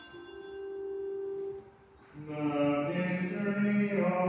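Liturgical chant: one note held for about a second and a half, then after a short pause organ and voices begin singing together.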